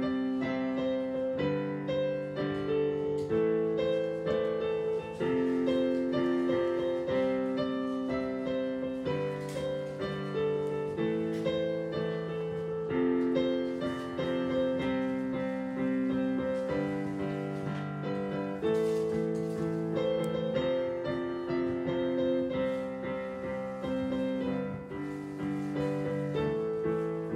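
A digital piano played solo: a slow, steady piece of held chords that change every second or two, with a high note repeating above them.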